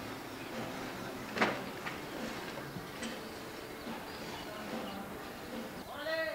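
Outdoor neighbourhood ambience: a steady background hiss with faint distant sounds, broken by one sharp knock about a second and a half in and a couple of smaller ticks.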